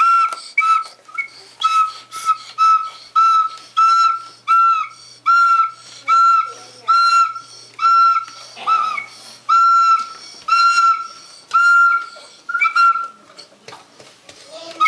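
A baby blowing a green plastic toy recorder: a string of short toots on one high note, about one or two a second, each bending slightly in pitch as the breath starts and stops.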